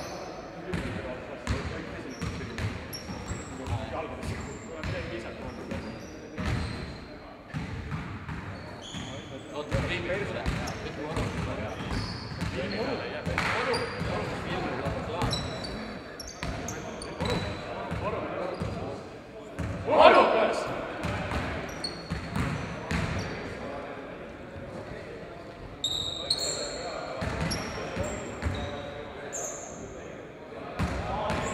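Basketballs bouncing and thudding on a sports-hall floor, with short sneaker squeaks and players' voices echoing in the hall. One louder burst of sound stands out about two-thirds of the way through.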